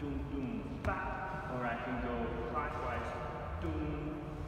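A man speaking, with one short sharp tap about a second in.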